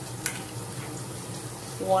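Onion, mushroom and shallot frying in oil in a pot on a gas hob, giving a steady sizzle, with one sharp click about a quarter of a second in as the plastic lid comes off a small cup.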